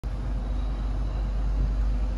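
Steady outdoor background noise with a strong low rumble and no distinct events.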